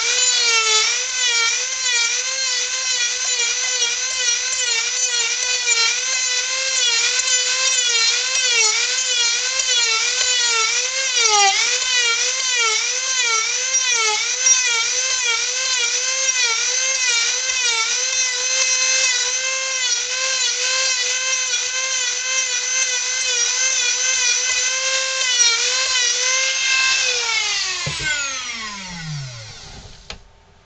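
Dremel rotary tool with a small disc, its high-pitched whine wavering up and down in pitch as the disc bites into and lifts off the wood of a carved dummy head. Near the end it is switched off and winds down with a falling pitch.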